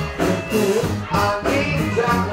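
Live rock band playing, with a drum kit keeping a steady beat under guitar and singing.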